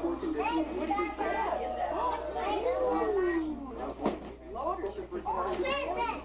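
Several children's voices chattering and calling over one another, with one long falling call midway and a sharp knock about four seconds in, over a steady low hum.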